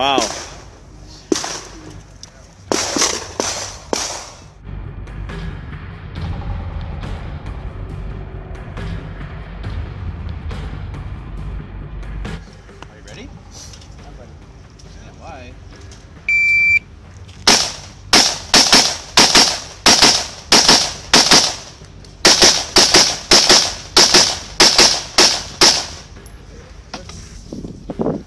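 A shot timer gives a short electronic start beep. About a second later comes a long string of rapid gunshots, about two a second, with a short pause partway through before a second run of shots.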